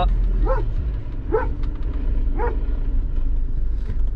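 A dog whining in three short, high yips, over the steady low road rumble of a car cabin.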